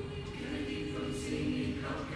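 Mixed-voice choir singing a cappella, holding sustained chords, with a brief sibilant consonant about a second in.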